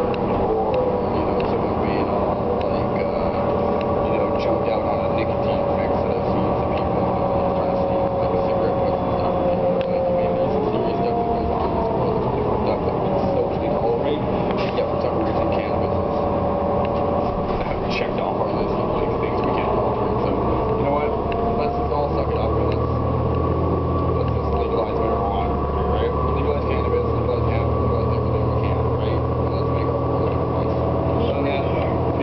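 City bus running, heard from inside the passenger cabin: a steady engine and drivetrain drone with whining tones that shift in pitch, the low drone growing louder about two-thirds of the way through.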